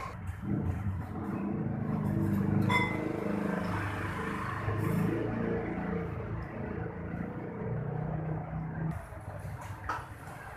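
A motor vehicle engine runs close by, its pitch rising and falling, and fades out about nine seconds in. About three seconds in there is a single clink of metal cutlery on a bowl.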